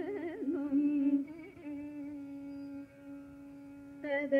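Female Carnatic vocalist singing rāga Shanmukhapriya with wavering, ornamented pitch glides (gamakas) over a steady drone. The phrase settles into a held note, and about three seconds in the voice drops away, leaving the drone alone.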